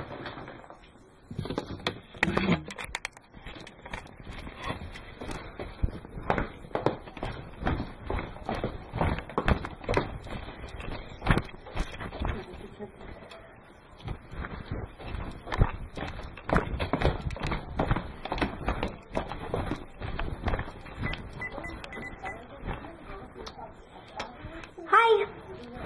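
Handling noise from a camera being picked up and carried: irregular knocks, bumps and rubbing against the microphone throughout.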